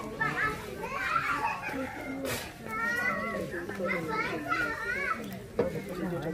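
Several children talking and calling out over one another, with a couple of brief sharp knocks.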